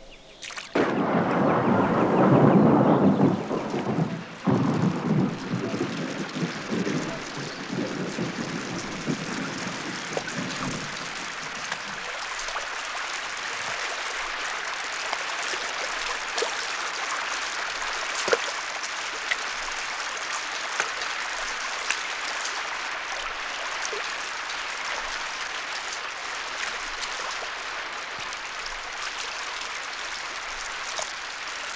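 Thunderstorm: a long roll of thunder, loudest in the first few seconds and dying away by about twelve seconds in, over steady rain that continues with scattered sharp ticks.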